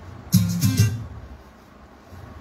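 A short burst of guitar-like electronic music, about two-thirds of a second long and starting a moment in: a phone alert or ringtone sound.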